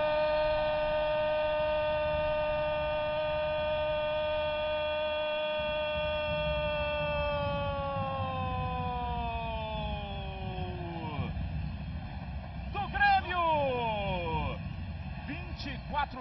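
A TV football commentator's long drawn-out goal shout, 'Goooool', held on one pitch for about seven seconds and then sliding down as his breath runs out, over low stadium crowd noise. A few shorter shouted calls follow near the end.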